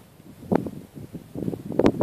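Wind buffeting the microphone in uneven gusts, with two sharp knocks, about half a second in and near the end.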